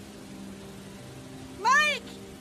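One loud, high-pitched call near the end, rising and then falling in pitch.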